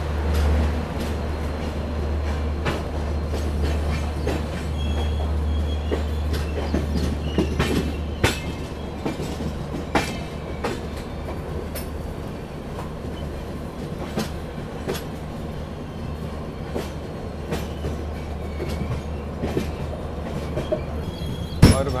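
Passenger train coaches rolling through a station yard: a steady low rumble with irregular sharp clicks as the wheels run over points and rail joints, heard from an open coach door.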